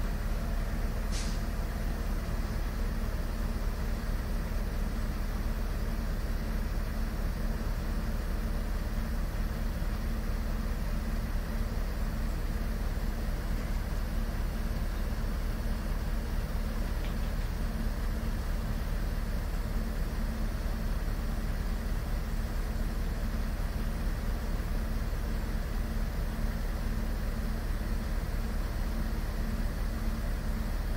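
Heavy diesel engine running at a steady drone, with a brief high hiss about a second in.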